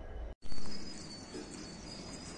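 A short dropout, then a brief loud rush of noise. After it, an insect, most likely a cricket, trills steadily as a thin, continuous high tone over low background noise.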